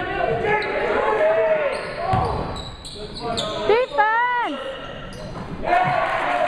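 Voices of players and spectators in a gymnasium during a basketball game, echoing in the hall. A basketball thuds on the hardwood about two seconds in, and a loud wavering cry rises and falls near four seconds.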